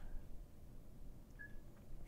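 Quiet room tone: a faint low hum and hiss from the recording microphone, with one brief faint high blip about one and a half seconds in.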